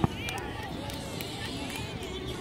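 A beach volleyball smacks once off a player's forearms on a low dig, a single sharp hit right at the start. Behind it are beachgoers' chatter and voices.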